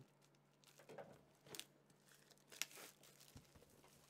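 Faint, scattered crinkling and rustling of plastic shrink-wrap and cardboard as a trading-card Elite Trainer Box is unwrapped and handled, with a few small clicks among it.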